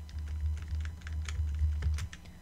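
Computer keyboard keys tapped rapidly over and over, Ctrl+D pressed repeatedly to duplicate a line, as a quick uneven run of clicks over a low steady hum.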